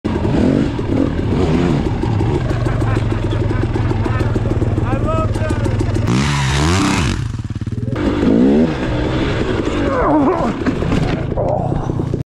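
Dirt bike engine running under way, its revs rising and falling, with a brief loud rush of noise about six seconds in.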